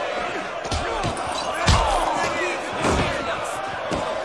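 Three heavy punch impacts land about a second apart, the middle one the loudest, over a crowd of spectators shouting.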